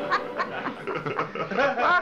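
A person laughing: a string of short chuckles, louder toward the end.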